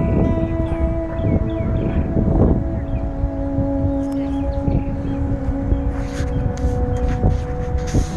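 Wind buffeting the microphone in a heavy low rumble, under a few long held notes of background music that step from one pitch to another.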